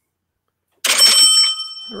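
A bell-ring sound effect played from a phone. It comes in a little under a second in with a sharp hit, followed by a bright ring that hangs on for about a second.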